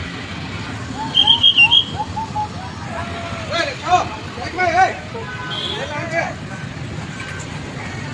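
Street ambience: steady traffic rumble with people's voices, and a short high warbling beep about a second in.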